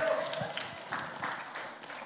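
Congregation applauding in response to the preacher's call to get loud, the clapping fading away across the two seconds.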